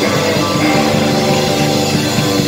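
Live band playing an instrumental passage of a rock-and-roll song: electric guitars, electric bass and drum kit, no vocals.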